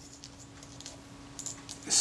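Faint handling sounds of fingers picking at the edge of a camera's leatherette covering: a few soft, brief ticks, mostly in the second half. A faint steady hum runs underneath.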